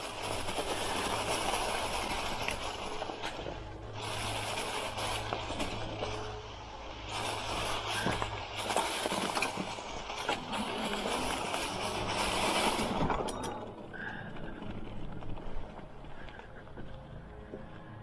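Fat 26x4 tires of an e-bike rolling over dry fallen leaves on a trail, a continuous rustling crackle that rises and falls, over a steady low hum. The noise drops and thins out about 13 seconds in.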